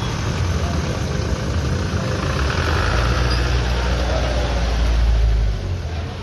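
Force Traveller van's engine pulling away and driving past close by. Its low rumble builds, is loudest about five seconds in, then falls off quickly as the van passes.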